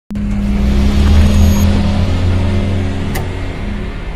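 A loud, steady low drone that starts abruptly, with a sharp click about three seconds in.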